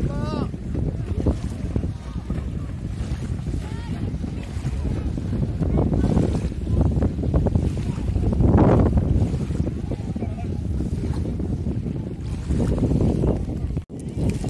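Wind buffeting the phone's microphone over the wash of shallow sea surf, with faint distant voices calling near the start.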